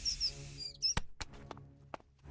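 Cartoon sound effects over soft background music: short high squeaky chirps in the first second, then four sharp clicks about a second in and near the end.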